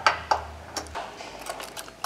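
Light, scattered metal clicks and ticks of a hex key working a bearing-unit mounting bolt on a conveyor drive shaft as the bolt is backed out.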